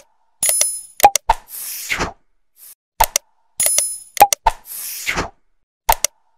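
Sound effects for an animated like-and-subscribe end card: a bell-like ding, quick mouse-click taps and a whoosh, the sequence repeating about every three seconds.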